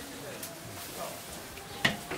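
Metal-framed glass display cabinet door being handled, with one sharp click near the end over a quiet background.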